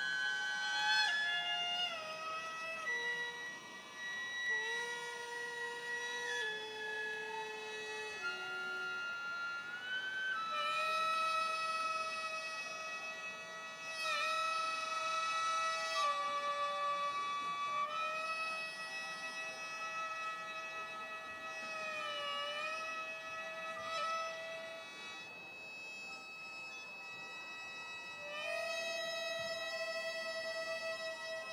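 Gagaku court music played on wind instruments: the shō mouth organ's sustained chord under a wind melody that steps through several pitches, then holds long notes with brief downward bends. The sound thins out for a moment near the end before the chord swells again.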